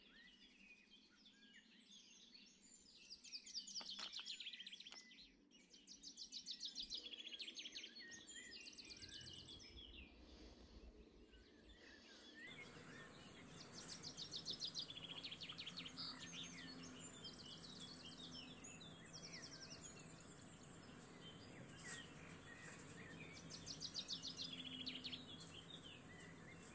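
A songbird singing: short, high, fast trilled phrases repeated every couple of seconds, over a faint steady hiss.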